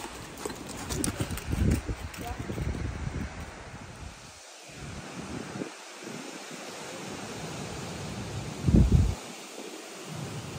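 Wind buffeting the microphone in uneven gusts, the strongest near the end, with a trotting horse's muffled hoofbeats on the arena surface in the first couple of seconds.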